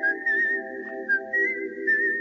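Ringtone music: a high whistled melody that wavers slightly in pitch over a steady held chord.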